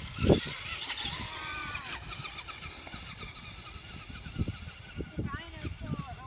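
Traxxas radio-controlled monster truck driving away: its motor whines, rising and falling in pitch about a second in, with a hiss alongside, then the whine grows fainter as the truck gets farther off.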